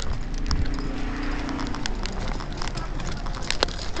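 Footsteps and knocks of a hand-held phone being carried while walking from the sidewalk into a shop: irregular sharp clicks over a steady background noise. A low drone sounds for about a second and a half near the start.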